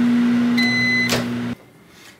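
Microwave oven running with a steady electrical hum. A single half-second beep sounds about halfway through, then a click, and the hum stops about one and a half seconds in.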